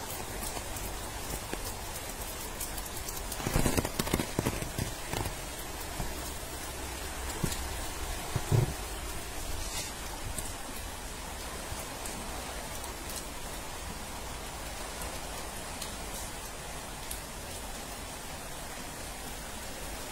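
Steady rushing noise of water, with no pitch to it, from rain and a flash flood running over stone paving. A few brief louder bumps come between about three and five seconds in, and another near eight and a half seconds.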